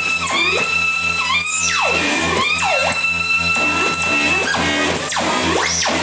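Live improvised noise music from a reed instrument and electronics: a held high tone that dips in pitch now and then, crossed by sweeping electronic glides that fall and rise, over a steady low drone.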